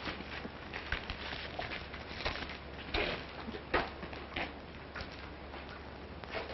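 Footsteps: a few short, irregular steps over the steady hum and hiss of an old film soundtrack.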